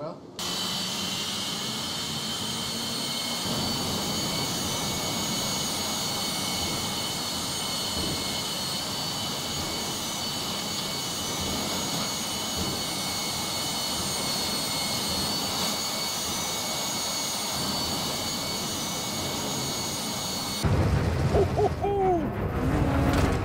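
A gas-turbine engine running steadily: an even rushing roar with a constant high-pitched whine over it. Near the end a louder, different sound cuts in.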